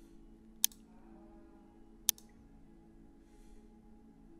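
Two sharp computer mouse clicks, about a second and a half apart, over a faint steady hum.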